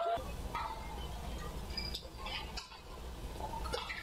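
Badminton rally: sharp racket strikes on the shuttlecock about once a second, with short squeaks of court shoes on the floor over the low rumble of the hall.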